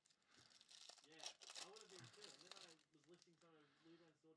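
Faint crinkling and tearing of a trading-card pack wrapper being opened by hand, under faint low talk.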